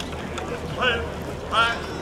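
Parade spectators waiting along the street. There are two brief, high-pitched voice calls, about a second in and near the end, over a steady low rumble and general crowd noise.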